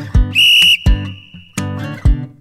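A short, high whistle-like signal tone sounds about a third of a second in, lasting under half a second and then fading. It marks the end of one exercise interval and the start of the next. It plays over pop music with a steady beat.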